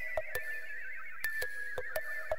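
A man stifling a laugh: a thin, high squeak held through closed lips, broken by small irregular catches of breath.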